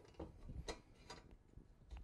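Faint, scattered clicks and ticks, about three, from an aluminium extrusion frame bar and its nuts being slid along the slots of the upright frame pieces.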